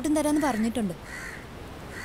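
A woman speaking for about the first second. Then a faint, short, harsh bird call is heard in the background.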